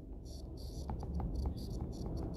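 Stylus writing on a tablet screen: a quick run of short, high scratching strokes with a few light taps as a word is handwritten.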